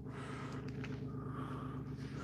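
Quiet steady low hum, with faint scraping and a few light ticks from a mixing stick stirring epoxy in a plastic cup.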